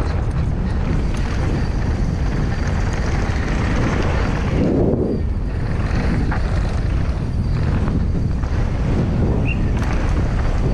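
Wind buffeting the camera microphone on a downhill mountain bike at speed, with the tyres rolling over dry, stony dirt; the rush swells briefly about halfway through.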